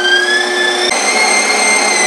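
Electric meat grinder running while grinding pork: a loud, steady motor whine that starts at once, rises slightly in pitch and shifts about halfway through as the meat load changes.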